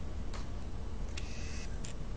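Metal spoon scraping and clicking inside a small pumpkin as the seeds and pulp are dug out. There is a short click early, a longer scrape a little past a second in, and another click near the end.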